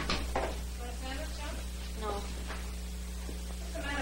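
A couple of sharp knocks near the start, then faint, indistinct voices in short snatches over a steady low hum.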